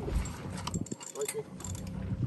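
Fishing reel clicking and ticking irregularly as line is reeled in under load on a bent rod.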